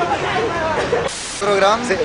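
Several people talking in Spanish, picked up by a phone's microphone, with a short hiss about a second in.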